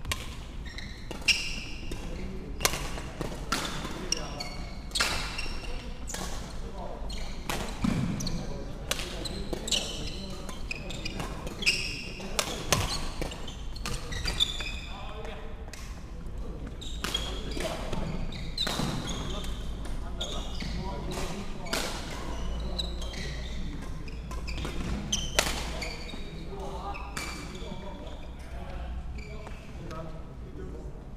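Badminton play in a large echoing sports hall: sharp racket hits on the shuttlecock, roughly one a second, mixed with short high shoe squeaks on the wooden court floor.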